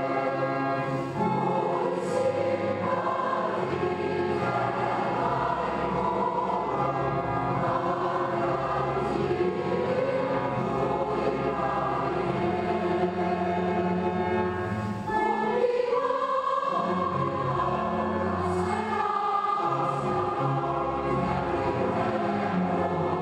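Choral music: a choir singing slow, held chords that shift every second or two, with a broader change in the harmony about two-thirds of the way through.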